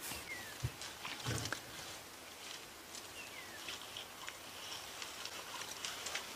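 Elephants feeding on leaves: faint rustling and chewing, with a couple of soft low thuds in the first second and a half.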